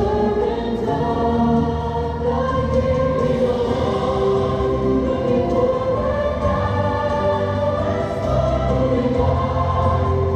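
Choral show music: a choir singing long held notes over a steady accompaniment.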